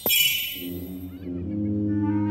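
Cartoon magic sound effect: a sharp hit with a bright sparkling shimmer that fades within half a second, then a low, brass-like sustained note from the score that comes in and swells, like a foghorn.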